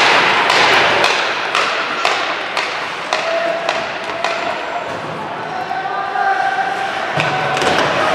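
Ice hockey play in an indoor rink: repeated sharp knocks and clacks of sticks on the puck and the puck against the boards, over the scrape of skates, with voices calling out.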